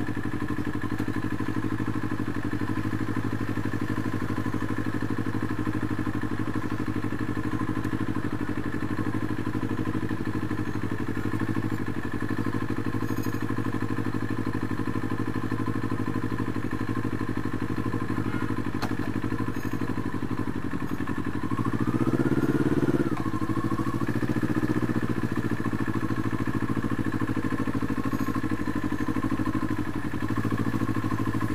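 CFMoto 400NK motorcycle's parallel-twin engine running steadily under way. About three quarters of the way through, the engine note rises briefly, gets louder, then falls back.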